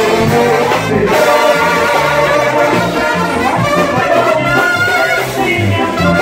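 Live brass band playing an instrumental passage: trumpets and trombones over low bass notes that change step by step.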